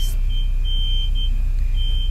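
A steady low background hum, with a faint high-pitched tone that cuts in and out several times above it.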